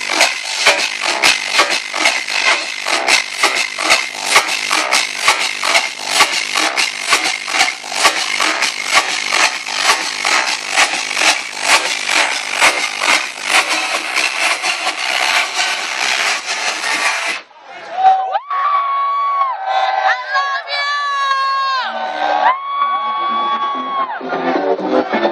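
Loud club trance music with a steady kick beat under a dense wash. About 17 seconds in the beat cuts out into a breakdown: a single held melodic line that slides and steps between notes.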